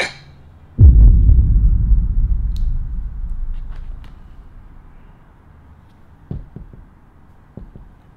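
A sudden deep rumbling boom about a second in, fading away over about three seconds, followed by a few faint taps.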